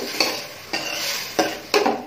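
Metal spoon stirring beef pieces in oil inside a metal cooking pot: a handful of irregular scrapes and knocks of the spoon against the pot.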